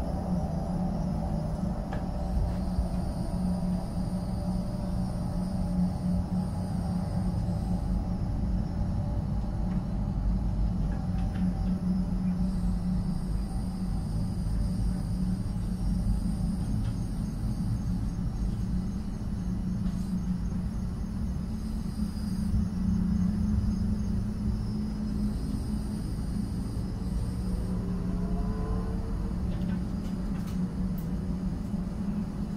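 A steady, low droning rumble with a constant hum, joined near the end by a few faint rising tones.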